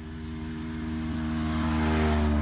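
A motor vehicle on the nearby highway approaching, its engine hum growing steadily louder toward the end.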